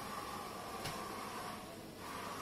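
Quiet room tone: a faint steady hum with a single soft click just under a second in.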